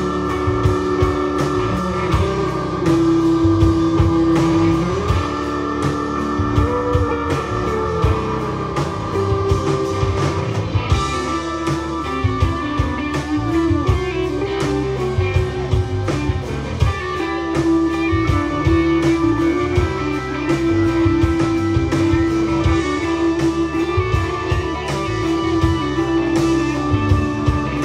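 A live hill-country blues-rock band playing an instrumental passage: electric guitars over a steady drum-kit beat, with a lead line of long held notes that step from pitch to pitch.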